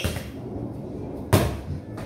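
A football struck once in a header, a single sharp thud about two-thirds of the way through, with a short echo off the bare walls and tiled floor.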